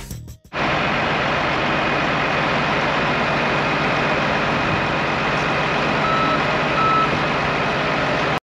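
Diesel engines of a compact track loader and an idling semi truck running steadily while round hay bales are loaded, with two short back-up alarm beeps near the end.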